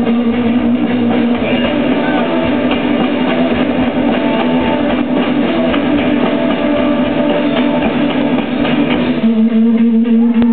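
Live rock band playing an instrumental on electric guitars, bass and drums, a loud, dense wall of sustained guitar tones. The low bass end drops away about a second before the end while the guitars ring on.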